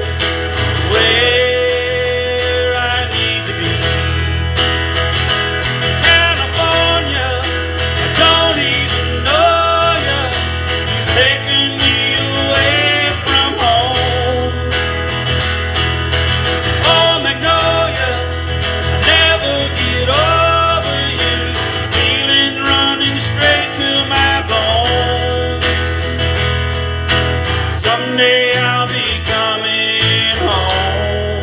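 Steel-string acoustic guitar strummed steadily in a live country-style song, with a gliding melody line over the chords.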